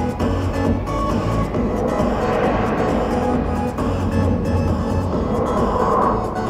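Live electronic pop music played loud over an arena PA, with a heavy, steady bass.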